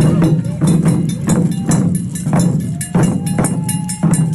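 Taiko drum ensemble playing a quick, steady run of hard drum strikes, about three or four a second.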